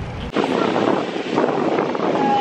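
Steady rushing wind noise on the microphone, starting abruptly a moment in, after a short stretch of low wind rumble.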